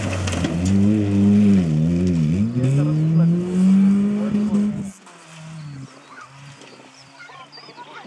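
Rally car engine under hard acceleration passing by, its pitch dipping and rising twice as the driver lifts off and changes gear, then climbing again. About five seconds in the sound drops off sharply and the engine carries on faintly and steadily as the car pulls away.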